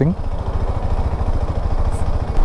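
Engine of a new motorcycle still being run in, turning at low revs as the bike rolls slowly through city traffic. A steady low thrum of firing pulses, with no revving.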